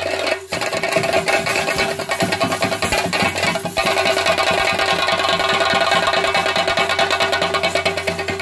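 Live theyyam accompaniment: chenda drums beaten in a fast, dense rhythm with clashing hand cymbals, under a steady held tone. The cymbal wash grows fuller after a short dip about halfway through.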